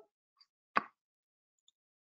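A single short, sharp click about three-quarters of a second in, otherwise near silence; the last trace of a ringing chime fades out at the very start.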